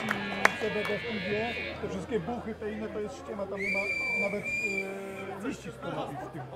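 Indistinct chatter of several people between songs, with no music playing. A high steady tone sounds for about a second and a half midway.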